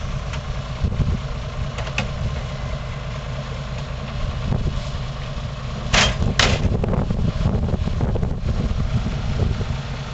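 Old tipper truck's engine idling with a steady low rumble, with two short sharp sounds about six seconds in, half a second apart.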